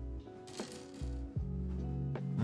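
Background music with sustained notes, over which small plastic building pieces click and rattle a few times as they are picked from a pile and handled.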